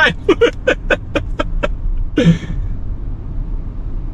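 A man laughing in a quick run of about eight short "ha"s, then a longer breathy laugh a little after two seconds, over the low steady rumble of engine and road noise inside a Bentley Bentayga's cabin.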